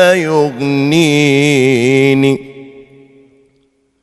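A man's unaccompanied voice chanting a munajat, an Islamic devotional supplication, holding one long ornamented note that wavers up and down in pitch. The note ends a little over two seconds in and trails away.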